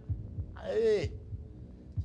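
Low, regular heartbeat-like thumps over a steady hum: a game-show suspense sound bed. A man's voice briefly says 'yes' about half a second in.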